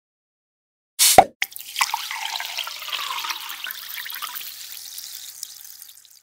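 A water-splash sound effect for a logo sting: a sudden loud splash about a second in with a quick drop in pitch, then a fizzing patter of drips and bubbles that slowly fades.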